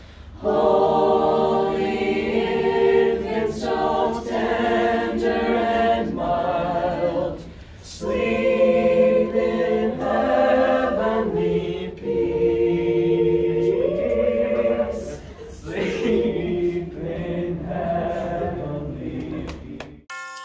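A group of teenage voices singing a Christmas carol together, in sung phrases with short breaks between them.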